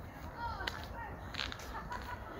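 A few sharp clicks over a steady low rumble outdoors, with faint high arching calls in the background.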